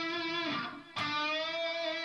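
Electric guitar playing a full-tone bend on the G string's seventh fret: a note bent up to pitch rings and fades. About a second in, the note is picked again, bent up, and held at the top.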